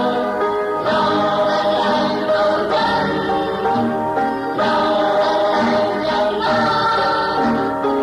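A choir singing a song in Vietnamese over instrumental backing, in sung phrases of about two seconds each.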